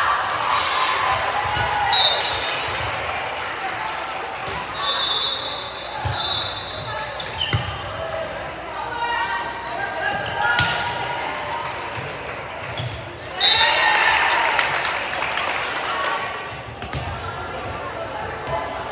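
Volleyball match in a large echoing gym: voices and shouts from players and spectators, a few sharp ball hits, and short high squeaks, with a loud burst of cheering and shouting about halfway through.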